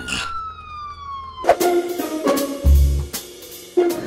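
Police siren wail falling slowly in pitch and cutting off about a second and a half in, followed by background music with drum hits.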